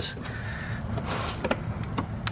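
Hands rummaging among engine-bay hoses and wiring, a low rustling with a couple of faint clicks about a second and a half in and near the end.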